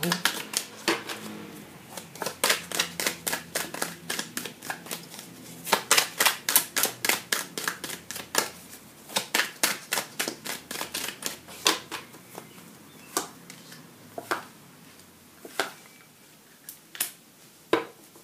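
Tarot cards (a Wheel of the Year tarot deck) being shuffled by hand, with quick runs of crisp card-edge clicks that are densest through the first two thirds. Near the end the clicks thin out to a few separate snaps as cards are laid out on a wooden table.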